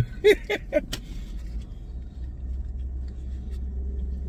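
Steady low hum of a car idling, heard from inside the cabin. In the first second there are a few brief sounds from a man's voice and a click.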